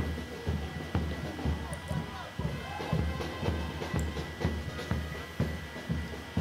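A live band playing music with a steady beat, with crowd voices around it.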